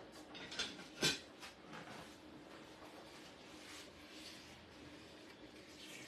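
A few faint clicks and knocks of kitchen things being handled, the loudest about a second in, then quiet room tone with a faint steady hum.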